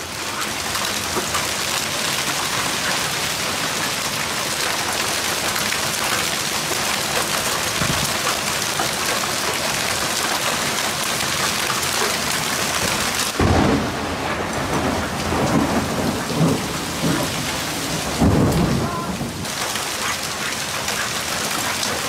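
Hail and heavy rain pelting down in a steady, dense hiss. Twice, at about 13 and 18 seconds in, a deeper rumble rises for a second or so.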